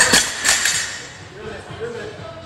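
Barbell loaded with rubber bumper plates dropped onto the gym floor: two hard hits close together early on, then the sound dies away.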